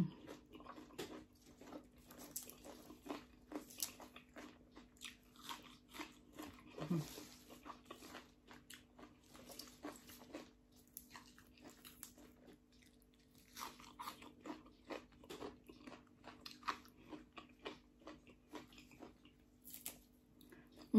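A person chewing a mouthful of papaya salad and crisp raw green sprigs, with faint, irregular crunching and mouth clicks throughout.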